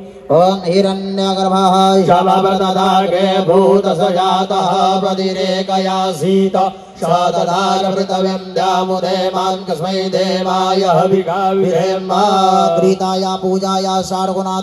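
Sanskrit mantras chanted by a man on one steady reciting pitch, with a short break about six seconds in.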